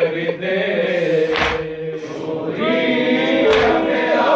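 A group of men chanting a noha, a Shia lament, in unison. Two heavy thuds about two seconds apart keep time with it: mourners beating their chests together (matam).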